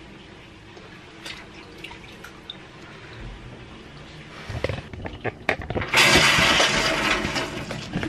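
Knocks and thuds against a stainless steel sink from about four and a half seconds in, then loud rushing, splashing water for the last two seconds, as a wet cat being bathed takes fright.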